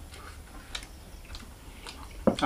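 Faint chewing with a mouthful of food: a few soft mouth clicks about half a second apart.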